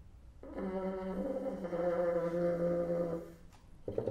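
Solo bassoon holding one long note that starts about half a second in and lasts about three seconds, its lowest pitch stepping down partway through. A few short, sharp notes start just at the end.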